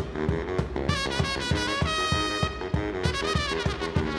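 Live brass-and-drums music: a baritone saxophone and a trumpet play over a steady drum beat, with the trumpet's high phrases coming in short runs.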